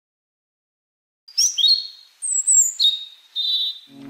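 Silence for just over a second, then bird calls: about four short phrases of high chirps and clear whistles, one sliding down in pitch.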